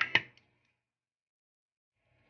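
Two quick clinks of a metal spoon against a glass salad bowl right at the start, followed by silence.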